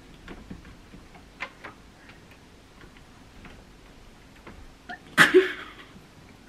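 Faint, scattered clicks of a hotel room door and its handle being handled, then a short, loud burst of voice near the end.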